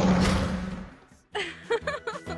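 A rushing sound effect with a low hum underneath, fading away within the first second. After a brief silence, short pitched vocal sounds come near the end.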